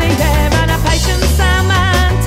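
Band music with a steady drum beat, a strong bass line and a wavering melody line on top.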